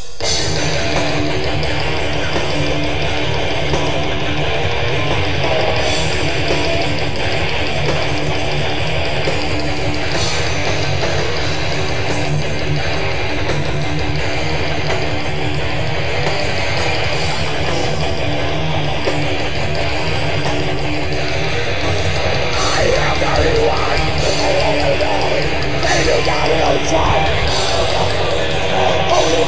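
Blackened death metal band playing live: distorted electric guitars, bass guitar and drums, with no vocals. It grows a little louder in the last few seconds.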